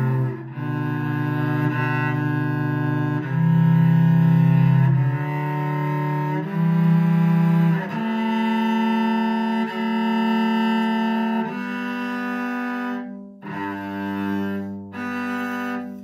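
Cello bowed in double stops, playing a slow scale of two-note chords as an intonation exercise. Each chord is held for one to two seconds, with two short breaks near the end.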